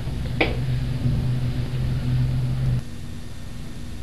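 A steady low mechanical hum that drops away about three seconds in. A single brief rising sound comes about half a second in.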